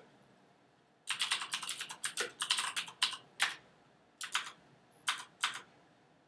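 Typing on a computer keyboard: a quick run of keystrokes starting about a second in, then a few single, spaced key presses near the end.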